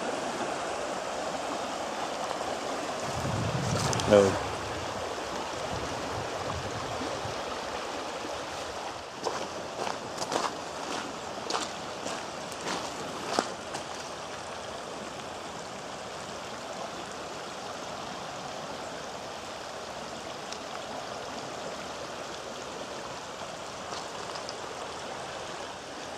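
Steady rushing of the flooded Great Morava river's water. A few short crunching steps on gravel come about a third of the way in.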